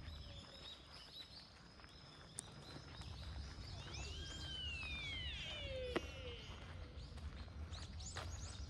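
Small birds chirping repeatedly in the park trees over a low steady rumble. About halfway through, one long whistled call falls in pitch, and a single sharp click comes about six seconds in.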